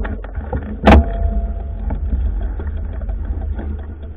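Handling noise as a camera is moved about: a steady low rumble with small clicks and crackles, and one sharp knock about a second in.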